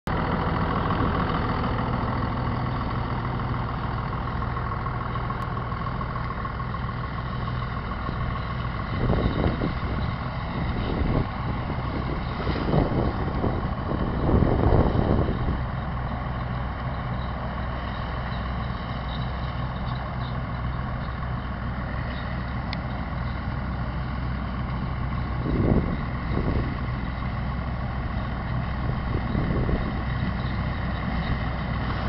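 Farm tractor engine running steadily while pulling a corn picker through standing corn, with a few louder rough surges in the middle and again near the end.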